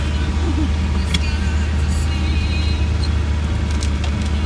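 Land Rover Defender 90 heard from inside its cab while driving slowly along a rough dirt lane: a steady low engine and drivetrain drone with road rumble.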